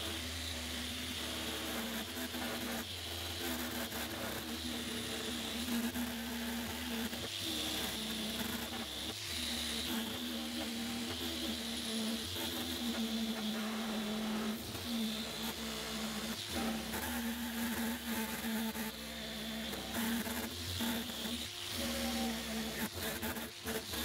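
Handheld orbital sander running steadily as it sands paint off an aluminium body panel: a continuous buzzing hum with the hiss of the pad on the surface, rising and falling slightly as it is worked across the panel.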